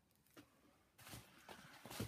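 Near silence, then from about a second in faint rustling and light taps of a paper card being handled.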